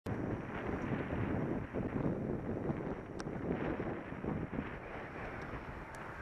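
Wind rumbling and buffeting on the microphone of a camera on a moving bicycle, unsteady but continuous. A faint click about three seconds in.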